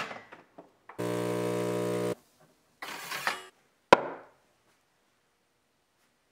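Automatic espresso machine buzzing steadily for about a second, followed by a short hiss and a sharp click.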